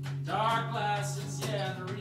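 Live guitar strummed in a steady rhythm, with a man singing a long held note that starts about a third of a second in and bends in pitch.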